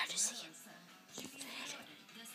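Soft whispered voice, with a hissy sound at the start and again about a second in, over faint background music.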